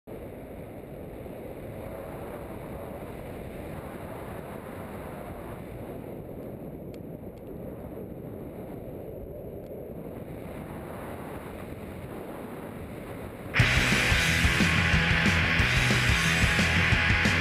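Wind rushing over a camera microphone in paragliding flight, a steady low rumble. Near the end, loud rock music cuts in suddenly.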